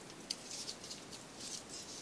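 Faint rustling and crinkling of a paper strip being squeezed flat as thread is wound around it, with a small tick about a third of a second in.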